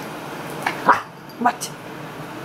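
A small Yorkshire terrier making a few short, rising vocal sounds while it digs and nests in fresh bed sheets, which rustle faintly underneath.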